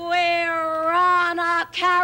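A lone singing voice holds one long, steady sung note with no accompaniment, breaks off briefly, then sounds a short second note at the same pitch near the end.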